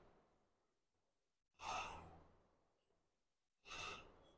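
A man's forceful breaths out during cable rope triceps pushdowns: two breaths, one about a second and a half in that fades over about a second, and another near the end, with near silence between them.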